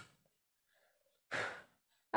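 A short breath, like a sigh, about a second and a half in, with the tail of another breath at the very start; otherwise quiet.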